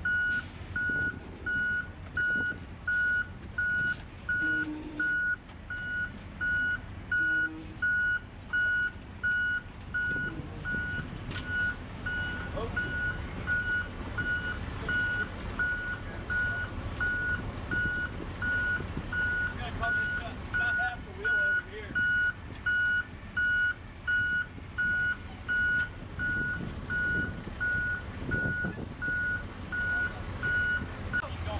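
A vehicle backup alarm beeping steadily at one pitch, about three beeps every two seconds, over the low, steady running of a heavy diesel engine.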